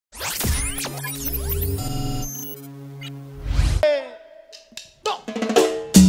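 Electronic intro jingle: swooshing sweeps and gliding synthesized tones over a low held tone, a whoosh, then falling glides and a brief near-silent gap about five seconds in. Live cumbia band music starts just before the end.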